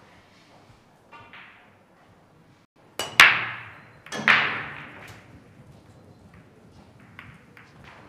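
Billiard cue striking the cue ball about three seconds in, followed at once by a loud clack of ball on ball and a second loud clack about a second later, each ringing out briefly in the hall.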